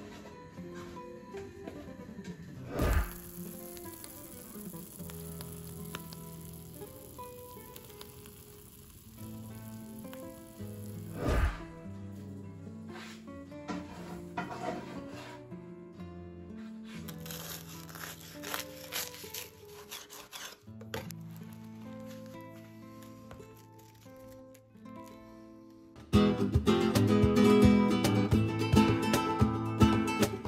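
Toasties frying in olive oil in a pan, a soft sizzle under background music, with two thumps, one about three seconds in and one about eleven seconds in. Near the end the music turns to louder strummed acoustic guitar.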